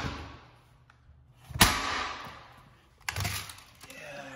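Sharp knocks or thuds, one about a second and a half in and another near the end, each dying away with an echo in a bare room.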